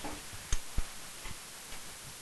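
A few faint, sparse clicks over a low hiss, the sharpest two about half a second in.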